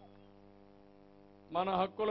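Steady electrical mains hum, a low even buzz, in a pause between phrases. About a second and a half in, a man's amplified voice comes back in loudly.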